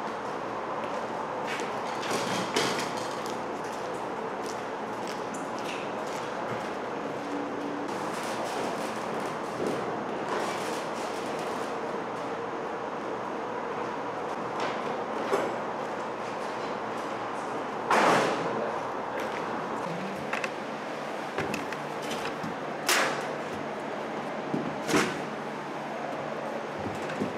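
Scattered knocks and bangs of a metal cabinet being carried up wooden stairs, over a steady background hum. The loudest bang comes about two-thirds of the way through, with two sharper knocks near the end.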